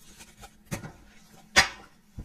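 A tarot card deck being handled on a wooden table: two sharp knocks about a second apart, the second one louder, with faint rustling between them.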